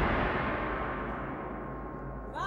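Opera orchestra after a loud percussion crash, the stroke ringing on and slowly fading over a sustained low bass note.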